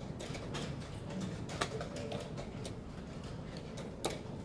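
Irregular clicks and clacks of wooden chess pieces being set down and chess clocks being pressed at many boards during blitz games, over a low background din. The sharpest click comes about one and a half seconds in.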